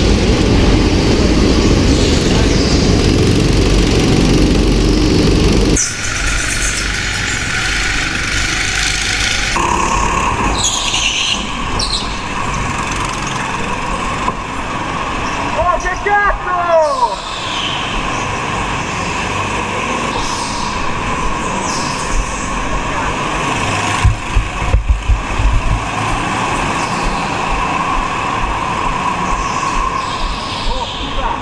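Go-kart engines heard onboard. A heavy, loud engine rumble for the first six seconds changes abruptly to a steadier, higher drone. That drone rises and falls in pitch as the kart speeds up and slows through the corners, with a few short sharp knocks about three-quarters of the way through.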